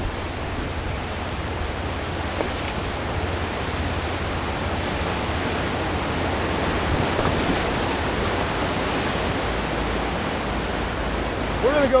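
Whitewater rapids rushing steadily around a moving raft, an even wash of river noise with no distinct events.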